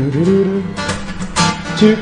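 Acoustic guitar strummed and ringing, with a man singing a slow melody over it. Guitar strums strike about a second in and again near the end.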